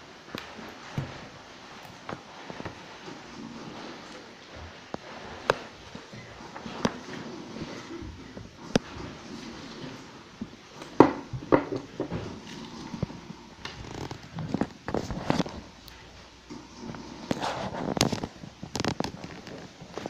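Pages of a comic album being handled and turned by hand: scattered, irregular sharp paper crackles and taps, with the loudest about halfway through and again near the end.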